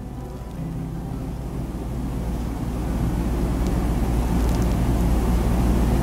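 Low rumble of wind buffeting the camera microphone, growing gradually louder, with a few faint clicks.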